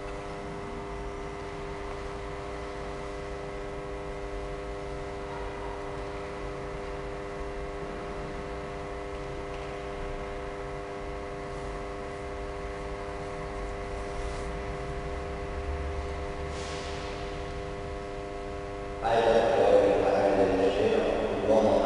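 A steady hum of several held tones, unchanging throughout, with a low rumble underneath; a man's voice comes in loudly near the end.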